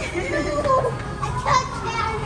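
A young child's high-pitched voice, with music playing in the background.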